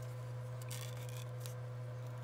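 Faint rustling of a small paper pennant being curled by hand around a wooden stick, a few soft rubs near the middle, over a steady low hum.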